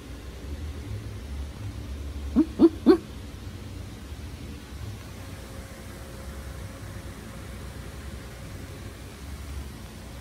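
A dog barking three times in quick succession, short sharp barks about a quarter second apart, over a steady low background hum.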